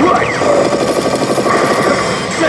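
Biohazard pachislot machine's sound effects: a fast, even run of rattling hits, like machine-gun fire, from about half a second in for a second, over the machine's game music.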